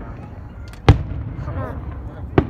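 Aerial firework shell bursting with one loud bang about a second in, with a faint crackle just before it.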